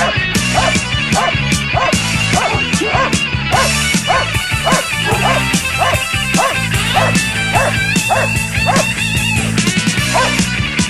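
A Doberman barks steadily and repeatedly, about three barks a second, at a decoy who stands still: the hold-and-bark of IPO protection work. The barking sits over loud background music with a beat.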